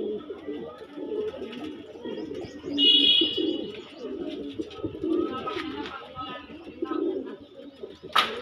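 A flock of domestic pigeons cooing continuously, many low, overlapping coos. About three seconds in comes a louder, brief high-pitched sound lasting under a second.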